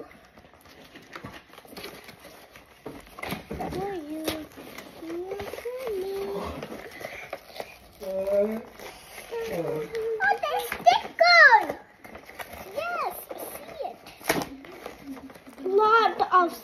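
Children's voices making wordless sounds and exclamations, rising to high squeals about ten to eleven seconds in. A few sharp clicks come from handling the box.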